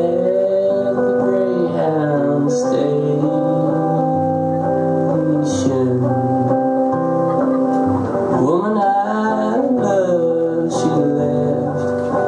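Live solo performance of a slow blues song: a man sings with long held notes over his own strummed acoustic guitar.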